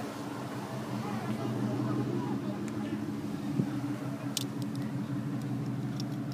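A car engine idling steadily nearby, with faint voices in the background and a sharp click about four and a half seconds in.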